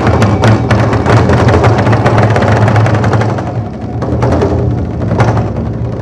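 Ensemble of Korean barrel drums (buk) struck rapidly with sticks over a steady low backing drone. After about three and a half seconds the drumming thins to a few single heavy strokes.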